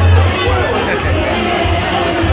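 Music with a heavy bass, mixed with the chatter of many voices talking at once.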